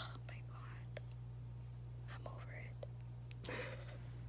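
A woman whispering softly in short breathy phrases, with a stronger breathy burst near the end, over a steady low hum.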